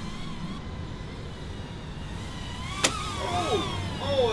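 Eachine QX90 two-cell brushed micro quadcopter in flight: its motors and props whine, and the pitch wavers up and down with the throttle. A single sharp tick comes just under three seconds in.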